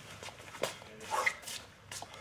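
A brief yelp-like vocal cry about a second in, with a few light knocks from sneakers stepping on a wooden floor around it.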